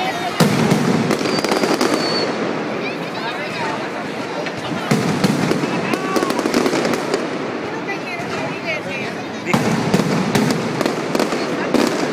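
Mascletà pyrotechnic display: rapid, dense barrages of firecracker bangs and aerial bursts. The barrage swells in three surges, just after the start, about five seconds in and about nine and a half seconds in.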